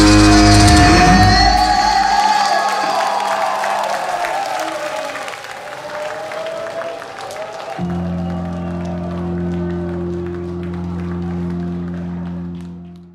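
A live doom-rock band's final chord rings out and dies away over a wavering held note, while the audience claps and cheers. About eight seconds in, a steady low sustained chord comes in and holds under the applause.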